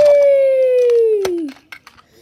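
A child's voice holding one long, loud vocal sound that slides slowly down in pitch and stops about a second and a half in, with a light click partway through.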